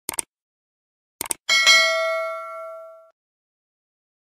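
Subscribe-button animation sound effect: two quick clicks at the start and two more just over a second later, then a bright notification-bell ding that rings out and fades over about a second and a half.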